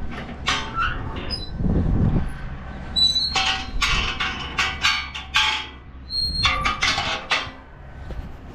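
A steel livestock gate and a wooden barn door being handled by hand: a run of clanks, scrapes and knocks, with a couple of brief high squeaks about three seconds in and again near the end.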